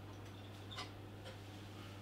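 Quiet room tone: a steady low hum with a few faint ticks about half a second apart.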